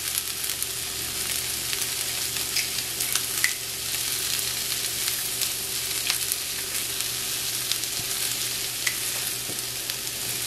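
Asparagus and shallot sautéing in olive oil in a skillet: a steady sizzle with scattered small crackling clicks.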